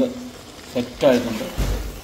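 Chicken curry sizzling in a pot as it is stirred, with a dull thump near the end.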